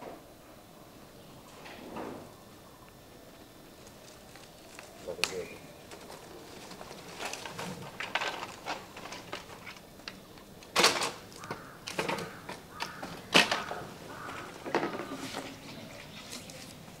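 Dry sticks and palm fronds crackling and snapping as a wood fire is kindled in a brick pit stove: scattered sharp cracks that grow thicker in the second half, with a few louder snaps.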